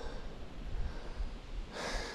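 A person breathing hard close to the microphone, with a louder breath near the end, over low wind rumble on the microphone.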